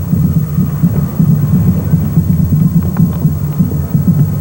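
High school marching band playing in the street, the sound dominated by low brass and drums.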